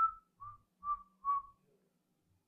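Four short whistled notes about half a second apart, the first the highest and the rest slightly lower, each dipping a little in pitch.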